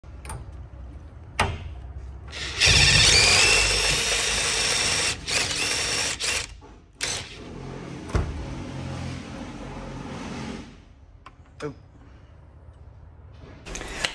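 Impact driver spinning a DeWalt Impact Connect copper pipe cutter attachment around a copper pipe, a motor whine over grinding noise. It runs in two spells, the first and loudest from about two and a half seconds in, the second quieter, with a few clicks before and after.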